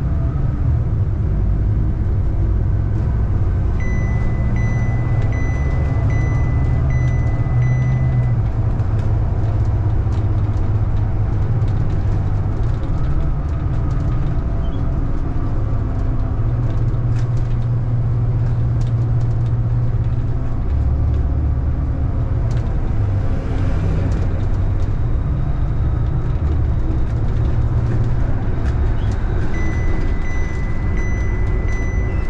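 City bus engine and drivetrain running as the bus drives along, a steady low drone with rattles, heard from inside the bus. A steady high-pitched beep sounds for about four seconds a few seconds in and starts again at the very end, and a brief hiss comes about three-quarters of the way through.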